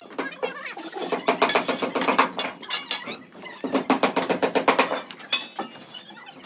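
Rapid mechanical clicking in two bursts of a second or more each.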